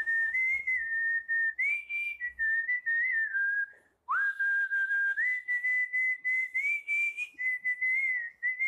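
A person whistling a tune through pursed lips: a single clear high note that steps up and down between pitches, with a short break about four seconds in before the melody picks up again with an upward slide.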